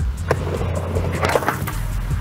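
Skateboard dropping in off a quarter-pipe ramp: a sharp clack as the wheels land on the ramp about a third of a second in, then the wheels rolling across the skatepark and up the opposite ramp, with a few clicks. Background music plays underneath.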